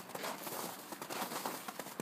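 Footsteps crunching in snow, a few irregular soft steps.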